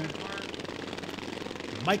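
Governed single-cylinder engines of racing lawn mowers running on the track, a steady mechanical noise.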